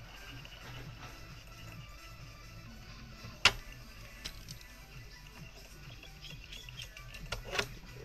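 Faint clicks and ticks of a metal whip finisher tool being handled around a fly-tying vise while thread is wound on the fly's head, with one sharp click about three and a half seconds in and a couple more near the end, over a low steady hum.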